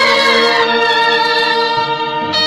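Tamil bandset brass band of trumpets and clarinets playing a film-song melody in unison, holding long, steady notes, with the melody moving to new notes near the end.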